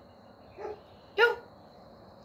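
A dog giving two short barks, a faint one about half a second in and a louder one just after a second.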